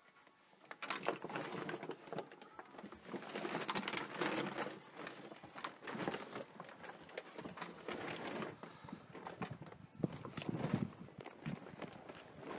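Handheld camera handling noise with footsteps: irregular knocks, scuffs and rustles as the camera is carried through the house to a doorway.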